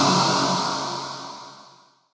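Drum and bass track in a breakdown: a dense, sustained synth wash with no beat, fading out steadily to silence near the end.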